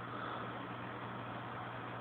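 Aquarium pump humming steadily, a constant low hum over a faint even hiss.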